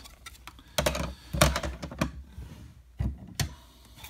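Hard plastic PSA grading slabs clacking against each other as they are shuffled in the hands: an irregular run of sharp clicks, loudest about a second and a half in.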